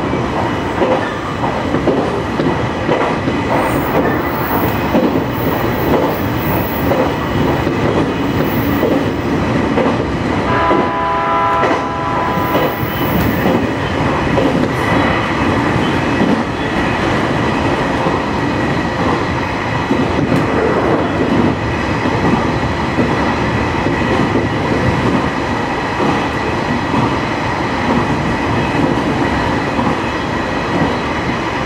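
Electric local train running, heard from inside the driver's cab: a steady rumble of motors and wheels on the rails. About ten seconds in, the train's horn sounds once for about two seconds.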